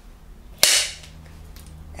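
A film clapperboard's clapstick snapped shut once, about half a second in: a single sharp clap with a short fading tail, the slate that marks the start of a take.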